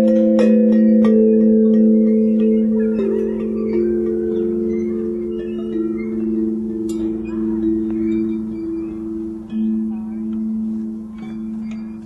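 Long hanging metal pipe chimes struck with a mallet, several low notes ringing together. Most of the strikes come near the start; the notes overlap and slowly fade.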